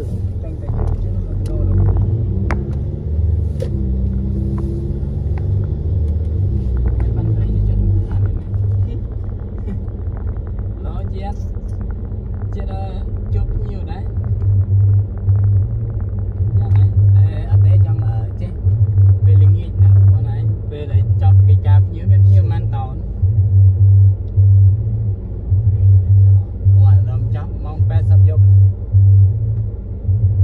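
Low rumble of a car driving, heard inside the cabin, turning into a pulsing low throb in the second half.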